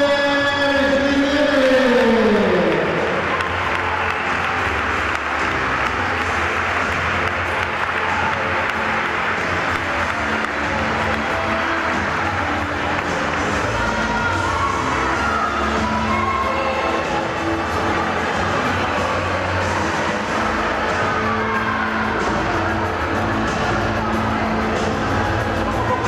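Music: a singer's long held note slides down in pitch and ends about two to three seconds in, and the song carries on steadily after it.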